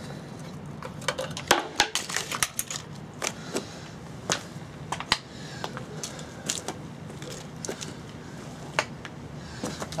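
Irregular clicks and taps of hand work on a small Briggs & Stratton engine as its air filter is taken off.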